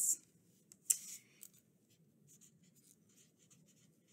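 Felt-tip marker writing on construction paper: a sharp click about a second in, then soft, faint scratchy strokes of the marker tip.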